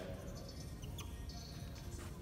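Dry-erase marker squeaking in short strokes on a whiteboard, with a single sharp click about a second in, over faint background music.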